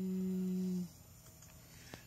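A person hums a single steady, flat 'mm' for about a second. A faint click follows near the end.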